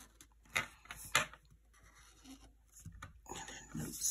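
A marker writing on a paper budget sheet: a few short scratchy strokes, the sharpest two about half a second apart. Near the end comes a louder rustle as the sheet is slid across the desk.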